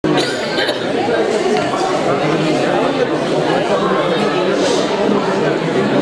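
Many people talking at once in a large hall: a steady hubbub of overlapping voices with no single speaker standing out.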